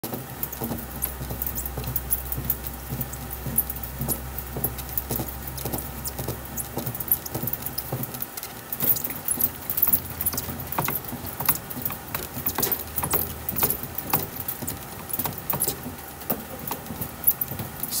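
A bat rolling machine's rollers are working a heated Easton Hype Fire composite bat barrel by hand, giving a steady run of small irregular clicks and crackles as the barrel is broken in. A low hum runs under them, stops about eight seconds in, and comes back faintly for a few seconds.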